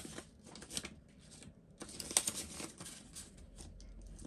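Faint rustling and crinkling of a polymer £5 note and the clear plastic pockets of a cash binder as the note is slipped into a pocket and the page is lifted, with a sharper crackle about two seconds in.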